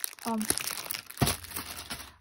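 Clear plastic wrapping around rolls of yarn crinkling as they are handled, with one sharp knock about a second in.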